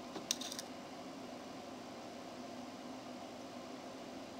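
A few light metallic clicks as a cylindrical magnet is set against the metal frame of the test device, about half a second in, followed by a faint steady background hum.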